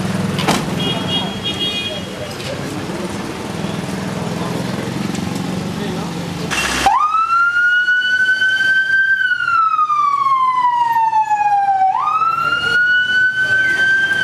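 Ambulance siren wailing, starting abruptly about seven seconds in: the pitch rises, slides slowly down for about three seconds, then jumps back up and climbs again. Before it, a vehicle engine runs steadily under street noise.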